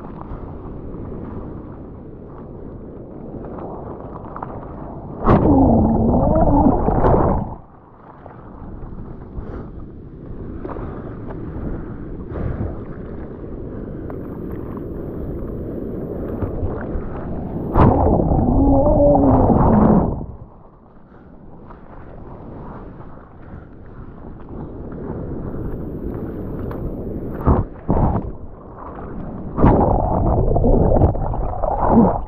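Surf whitewash churning over and around a waterproofed action camera: a steady rush of water, with two loud gurgling surges about five seconds in and again about eighteen seconds in as the camera is swamped.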